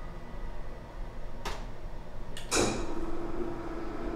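A wall touch switch clicks, and about two and a half seconds in an electric window blind motor starts and runs with a steady hum.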